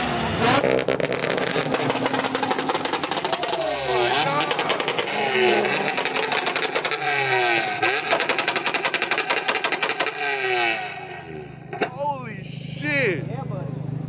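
A car engine revving hard over and over, its pitch sweeping up and down with each rev and the exhaust firing in a rapid, rattling pulse. Near the end the revving stops, leaving a steady low engine idle.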